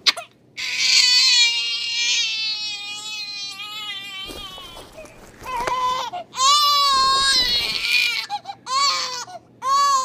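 Newborn baby crying: one long wail for the first few seconds, then a run of shorter cries.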